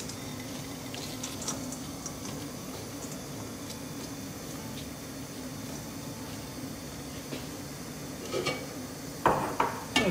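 Mangetout pods tipped from a bowl into a stainless steel colander and spread out by hand, giving faint light taps and rustles over a steady low hum. Near the end come a couple of louder knocks and a sharp metallic clank.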